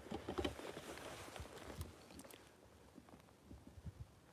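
Faint rustling with scattered small clicks, busiest in the first two seconds and thinning out after.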